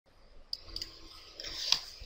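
A few faint, small clicks, the sharpest about a quarter of the way in and the loudest near the end, over a soft hiss that rises before speech begins.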